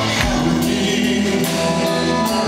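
Live rock band playing: electric guitar, bass guitar and drums, with cymbal strikes and a sung vocal over the band.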